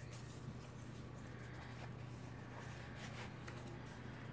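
Faint rustling and a few light taps of cardstock pages and paper photo mats of a handmade mini album being handled and flipped, over a steady low hum.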